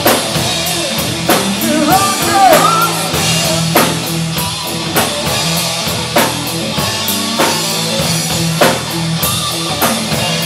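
A live rock band plays a song on drum kit, electric bass and electric guitar, with a steady beat and a hard drum hit about every second and a quarter.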